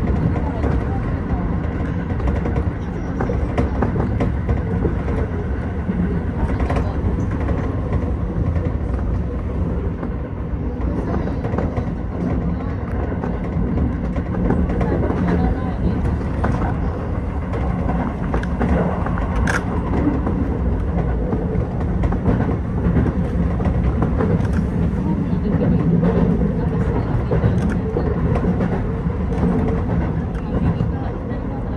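Keio 8000 series electric train running at speed, with steady rolling and running noise heard inside the front car. Faint clicks of the wheels over the track come through now and then, with one sharp click about twenty seconds in.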